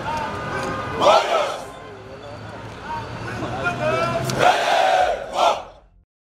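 A group of soldiers shouting together, with loud shouts about a second in and a longer run of shouting near the end over crowd noise; the sound fades out at the very end.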